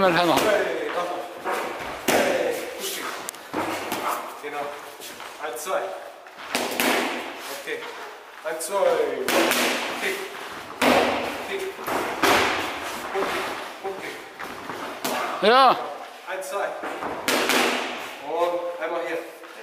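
Boxing gloves striking hand-held training pads: an irregular series of sharp slaps and thuds, with voices talking between the strikes.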